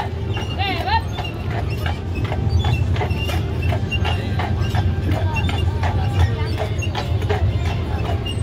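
A horse's hooves clip-clopping at a walk as it pulls a horse-drawn streetcar, over a steady low rumble of the car's wheels on its rails, with crowd voices around.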